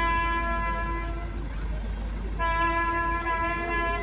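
Brass music playing long held chords. About a second and a half in, it breaks off for about a second, then resumes.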